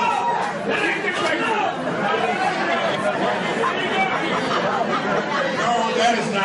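Audience chatter: many voices talking over one another at a steady level, with no single voice standing out.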